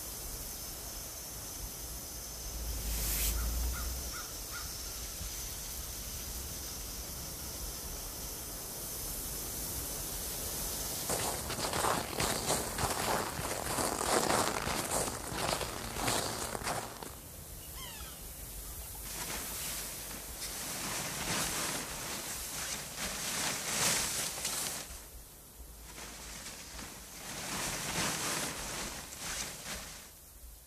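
A single muffled blast with a low rumble about three seconds in, as a burst of snow is thrown up. From about eleven seconds on come uneven bursts of rustling and scuffing, from soldiers crawling in snow.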